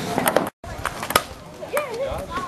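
Table tennis ball clicking against bats, table and rebound board in several quick strokes, with a brief silent break about half a second in. A child's voice comes in near the end.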